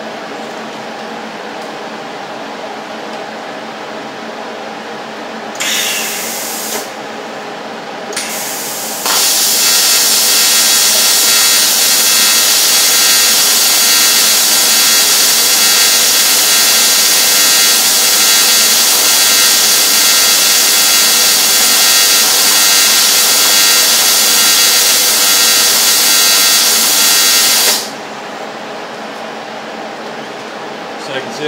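Rossi TC205 AC/DC inverter TIG welder's AC arc on aluminium: two brief sputters as it tries to strike, then a steady buzzing hiss for about 18 seconds that cuts off near the end, with a steady machine hum before and after. At 175 amps the arc is feeble and leaves the aluminium unmelted, a sign of the welder's fault.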